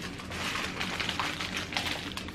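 Plastic MRE packaging crinkling and rustling in irregular small crackles as the meal's contents are handled and pulled from the opened pouch.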